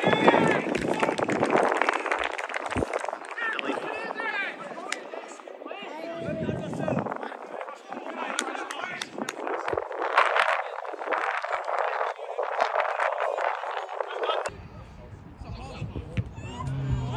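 Indistinct shouts and calls of footballers on an outdoor pitch, heard at a distance, with scattered short sharp knocks.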